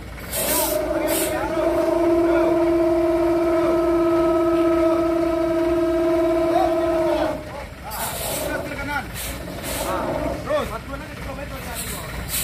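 Short hisses of compressed air from a Hino dump truck's air brakes. A loud, steady, pitched tone is held for about seven seconds and then stops, with men's voices calling over it.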